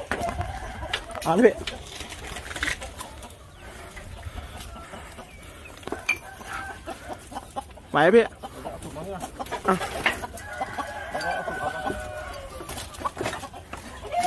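Gamecocks clucking in their coop, with a rooster crowing in one long, drawn-out call about ten seconds in.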